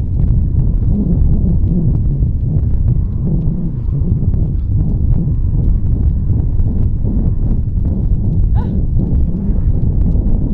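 Jogging footsteps thudding rhythmically on a rubber running track, under a steady rumbling buffet of wind and handling on a moving camera's microphone.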